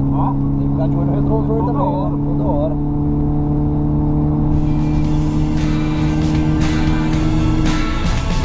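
Mercedes C250 Coupé's four-cylinder engine droning at a steady, unchanging pitch, held at constant speed with no revving. A voice talks over it for the first few seconds, and music comes in about halfway; the engine note cuts out just before the end.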